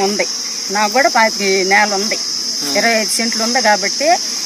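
A woman talking in two phrases over a steady, high-pitched insect chorus, typical of crickets, that drones without a break.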